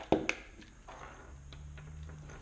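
Small clicks and taps from a coax compression crimping tool being worked by hand on an RG6 F connector, with one sharp click just after the start and scattered light ticks after it. The tool is stuck on the connector because its setting is too tight.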